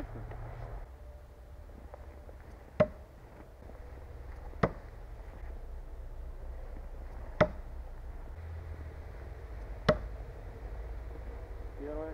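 Cold Steel Perfect Balance Thrower, a long steel throwing knife, striking frozen wooden log targets: four sharp knocks spread a couple of seconds apart.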